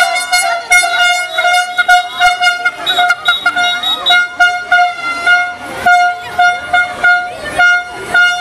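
A horn blown over and over in short toots on one steady high pitch, about two or three a second, with crowd voices mixed in.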